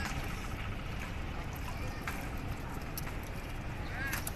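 Water lapping and gurgling against the side of a small fishing boat over a steady low rumble, with a few faint knocks about halfway through and near the end.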